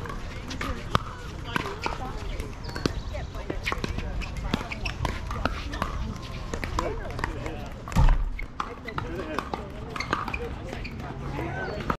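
Indistinct voices chattering, with frequent sharp pops of pickleball paddles striking the ball on neighbouring courts. A loud low thump about eight seconds in.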